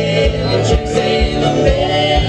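Live acoustic string band playing an uptempo country-bluegrass song: banjo, strummed acoustic guitar and bowed fiddle over a steady kick-drum beat.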